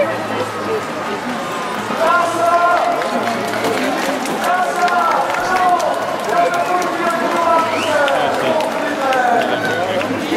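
Several people talking over the steady hubbub of a crowd, with high-pitched voices close to the microphone.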